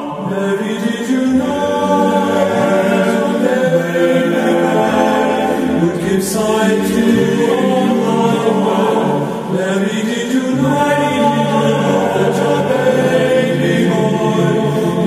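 Choir singing a slow pop-song arrangement in Gregorian-chant style, with held chords that change every few seconds.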